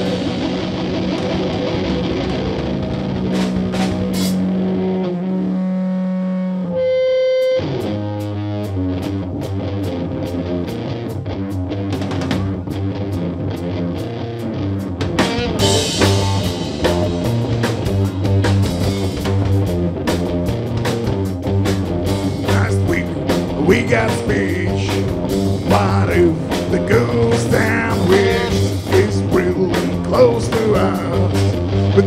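Rock band playing live, instrumental: electric guitar, bass and drum kit. Held notes ring for the first several seconds, there is a short break about seven seconds in, then the drums come back in with the full band, which gets louder about halfway through.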